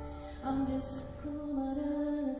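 A woman singing long, wavering held notes into a microphone while accompanying herself on piano in a live concert performance.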